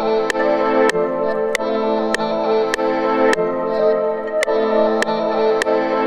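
Sustained synthesizer chords playing back from the production software. A sharp click falls on each beat, a little under two per second.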